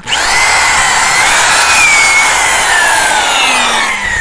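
Electric drill boring into a living tree trunk, the motor running at speed under load as the bit cuts into the wood. The motor's whine rises as it starts and falls in pitch near the end as the drill slows.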